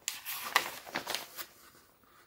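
Paper instruction booklet being handled and its pages turned, a few crisp rustles that die away after about a second and a half.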